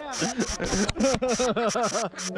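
A person laughing hard in a rapid run of breathy 'ha' bursts, about six a second, each rising and falling in pitch.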